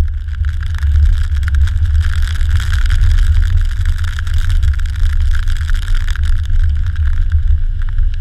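Car driving on a wet road, heard from a microphone mounted outside the car: heavy wind buffeting on the microphone with a steady hiss of tyres on the wet road and spray.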